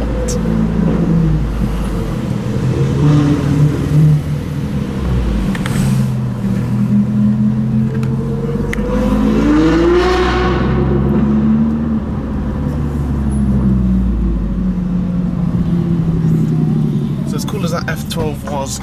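Small car engine running while driving in stop-start city traffic, heard from inside the cabin, its pitch shifting in steps. About nine seconds in it revs up and falls back.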